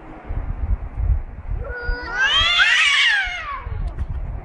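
A cat's drawn-out yowl, about two seconds long, rising and then falling in pitch, starting a little before halfway. It is a threat call between two cats squaring off against each other.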